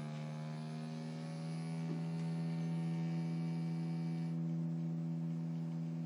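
Sustained tone of a low electric guitar string driven by an EBow, with a rich, even set of overtones. Its pitch climbs slightly over the first couple of seconds and then holds steady, as a stepper motor turns the tuning peg to bring the string from D up to E (82.4 Hz).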